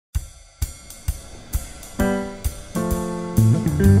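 Opening theme music: a drum kit plays cymbal and hi-hat hits about twice a second. Sustained electric guitar chords come in halfway through, and a bass line joins near the end.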